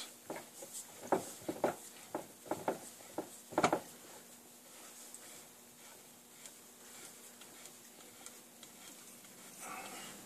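A run of light metal clicks and knocks from a steel bar being worked into a motorcycle flywheel assembly on a bench, the loudest about three and a half seconds in, then only faint room noise.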